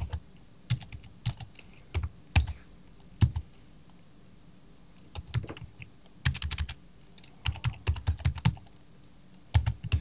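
Typing on a computer keyboard: single keystrokes spaced out at first, then a short pause about halfway, then quicker runs of keystrokes.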